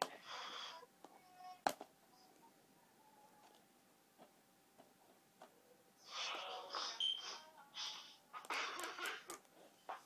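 Faint bursts of fingernail scratching and peeling at a stubborn sticker label on a plastic DVD case, with one sharp click early on. After a quiet stretch, more scratching starts in the second half.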